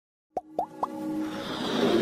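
Animated logo intro sound effects: three quick pops with a rising pitch, about a quarter second apart, then a swelling whoosh over music.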